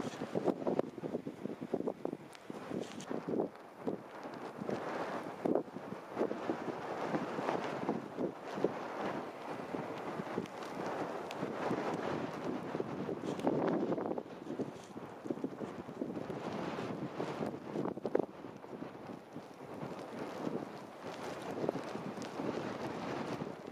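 Footsteps crunching through snow at a walking pace, a steady run of soft impacts, with wind on the microphone.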